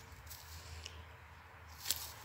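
Faint scraping and crumbling of dry soil as a hand pushes it into a planting hole around a seedling, with a light click near the end.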